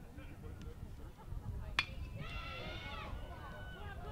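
A metal baseball bat hitting a pitched ball: a single sharp crack a little under two seconds in. A person's long shout follows just after, held for about a second and dropping in pitch at its end.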